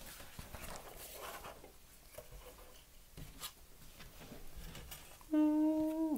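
Paper sheets and paper plates rustling and tapping as they are handled and laid on a table. About five seconds in, a person starts humming one steady note, louder than the handling.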